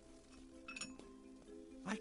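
A single light glassy clink about three-quarters of a second in, over quiet sustained background music.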